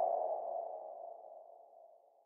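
A single mid-pitched ringing tone, the tail of an intro sound-effect hit, fading steadily away.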